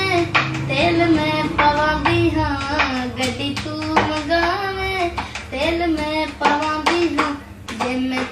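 A boy singing a Punjabi song unaccompanied in a clear, high voice with long held, bending notes, while tapping a beat with his hand on the wall panel beside him.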